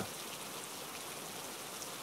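Steady rain-like background noise: an even hiss with no distinct drops, knocks or tones.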